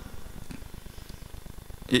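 Pause in a talk over a hall's sound system: low room noise with a faint, fast-fluttering rumble, then a man's voice starts a word near the end.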